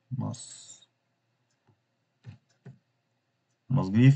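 Two soft computer-keyboard keystrokes a little past halfway, between a short spoken word at the start and speech starting again near the end.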